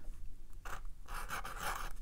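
Sharpie marker tip scratching over cold-press watercolor paper in short strokes while letters are written.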